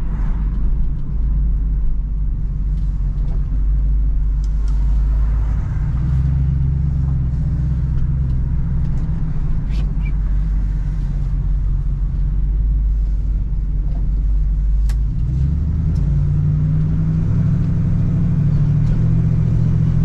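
The V8 engine of a 1968 Chevrolet Camaro SS running, heard from inside the cabin as the car pulls away and picks up speed. The pitch steps about three-quarters of the way through as the transmission shifts up, then climbs again.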